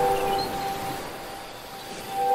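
End of an intro music jingle: a single held note fading away.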